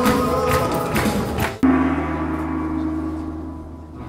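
Live band music with drums and singers, cut off about one and a half seconds in by a single loud hit whose low ring holds and slowly fades.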